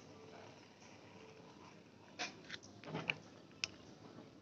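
A few faint, short clicks and taps over a quiet background, starting about halfway through, with the sharpest ones near the end.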